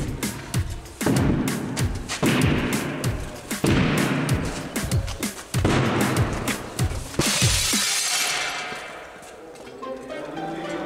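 Background music with a beat, then a double-glazed window pane shattering under a kick about seven seconds in, the breaking glass dying away over a second or two.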